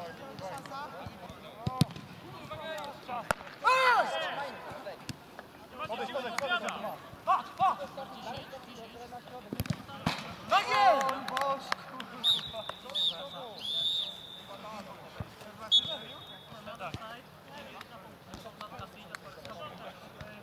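Sharp thuds of a football being kicked and players shouting on the pitch. A referee's whistle blows a few short blasts from about twelve seconds in, with one more brief blast near sixteen seconds, just after a goal is scored.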